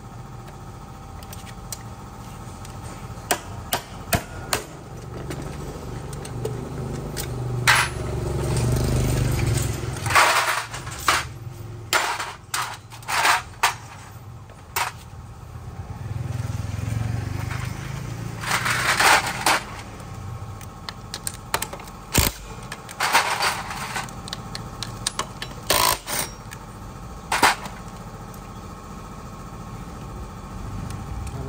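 Hand-tool work on a Honda scooter's aluminium CVT cover as it is tapped loose and pulled off the belt drive: scattered sharp knocks and clicks of metal on metal, with two longer stretches of scraping and rattling, about a third of the way in and again just past the middle.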